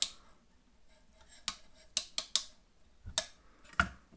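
Hard plastic LEGO pieces of a brick-built dragon clicking as its joints are worked by hand: several sharp clicks, irregularly spaced.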